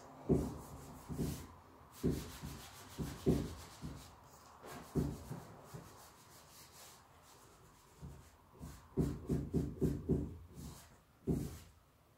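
Cloth rag rubbing over a painted wood panel in short, irregular wiping strokes, working back a wet grey paint wash, with a quick run of strokes near the end.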